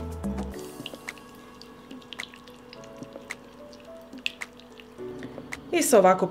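Soft background music over small, scattered clicks and drips of a silicone brush stirring a thick soy-sauce, mustard and honey sauce in a glass bowl.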